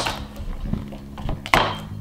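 Garlic cloves being crushed under the flat of a knife blade pressed by hand on a cutting board: lighter knocks, then one sharp thunk about one and a half seconds in.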